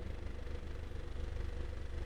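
Faint, steady low background hum with a fine rapid flutter and no distinct events.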